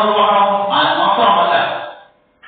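A man's voice in a chant-like recitation, holding a steady pitch, then changing about two-thirds of a second in and trailing off just before the end.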